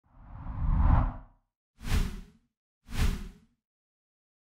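Three whoosh sound effects from an intro animation. The first is longer and swells up before fading, and two shorter whooshes follow about a second apart. Each is followed by dead silence.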